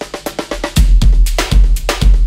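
Acoustic drum kit played in a groove: light strokes at first, then from under a second in, heavy kick drum beats with hard snare rim shots.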